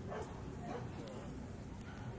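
A dog barking briefly, with people's voices in the background.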